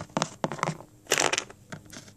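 Handling noise from small plastic Littlest Pet Shop toy figures being picked up, moved and set down on a tabletop: a run of short clicks and taps, with a brief scraping rustle about a second in.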